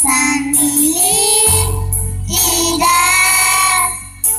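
A girl singing a song into a microphone over instrumental accompaniment, drawing out long notes with one upward slide; a low bass line comes in about one and a half seconds in.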